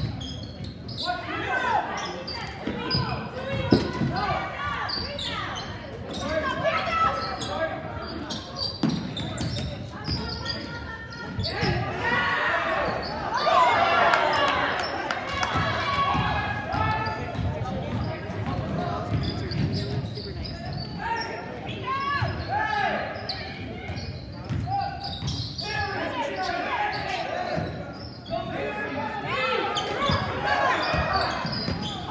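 Basketball dribbled on a hardwood gym floor during a game, amid indistinct shouting from players and spectators, echoing in a large gym. One sharp knock stands out about four seconds in.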